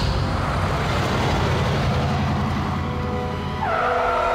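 A car driving up and braking hard to a stop, tyres skidding, with a sustained tyre squeal starting near the end.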